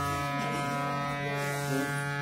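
A steady instrumental drone holding the same set of notes without change, the accompaniment of a devotional bhajan heard with no singing over it.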